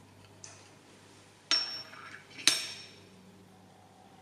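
A metal valve lifter clinking against the steel anvil of a digital dial-gauge stand as it is set in place to have its thickness measured: a light tap, then two sharp clinks about a second apart, each with a short ringing tone.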